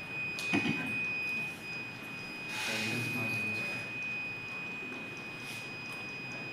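Piezo buzzer of an Arduino motion-sensor alarm sounding one steady high-pitched tone without a break. A faint click comes about half a second in, and a soft rustle around the middle.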